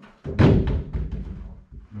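A football hitting a small mini goal: one loud thud about half a second in, followed by a rattle that fades over about a second.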